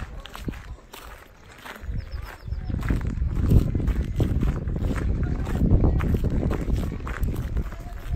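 Footsteps of a person walking on pavement, with voices of people around. A low rumbling noise sets in about two seconds in and stays the loudest sound.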